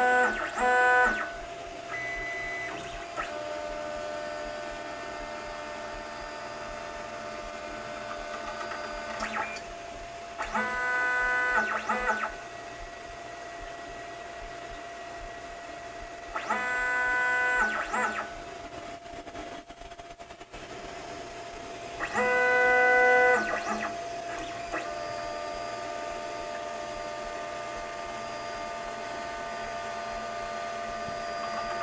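Wanhao Duplicator 9 3D printer's Y-axis stepper motor driving the large bed back and forth under its own power. It gives four short bursts of stepped, musical whine, each about one and a half seconds long and several seconds apart, over the printer's steady hum.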